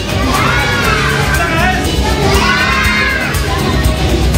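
A crowd of children shouting and cheering, their high voices rising and falling in two spells, over background music.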